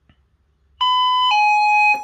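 Electronic two-note ding-dong doorbell chime from a Serene Innovations CentralAlert alert unit. It starts a little under a second in, with a short higher note and then a held lower one. It is the unit replaying its last notification, a doorbell, after its reset button is held for two seconds.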